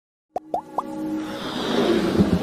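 Logo-intro music sting: three quick rising pops about a quarter second apart, then a swelling build that grows louder to the end.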